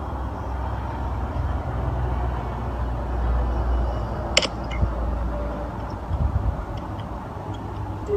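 Low, steady rumbling background noise with a single sharp click about four and a half seconds in.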